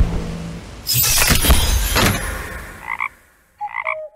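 Cartoon sound effects: a flurry of crashing, tumbling noises for about a second, fading away, then two short frog-like croaks near the end.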